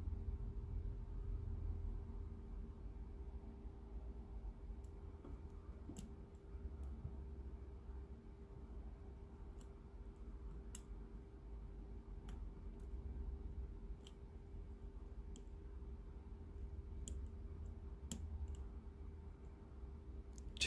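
Faint, scattered clicks of a hook pick and tension wrench working the pin stack inside a brass padlock's keyway during single-pin picking, over a steady low hum.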